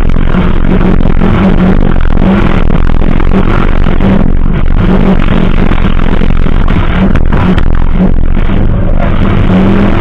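Engine of a 4x2 dirt-track safari race car running hard under throttle, heard onboard, very loud and distorted, with pitch rising and dipping as the driver works the throttle. Clatter of mud and stones hitting the car, with a few sharp knocks about seven seconds in.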